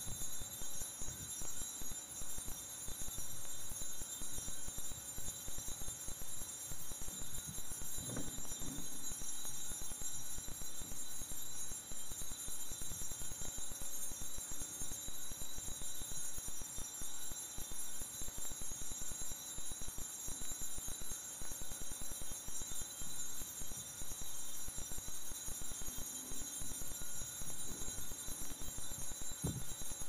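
Altar bells shaken in a continuous jingling ring, marking the blessing given with the Blessed Sacrament in a monstrance at Benediction. There is a brief low thump about eight seconds in.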